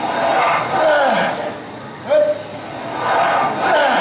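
A man yelling and groaning with effort as he strains through a heavy lift. There are three long, strained cries whose pitch bends up and down.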